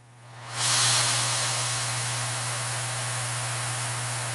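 Steady hiss like white noise or static, swelling in about half a second in and then holding level, over a low steady hum.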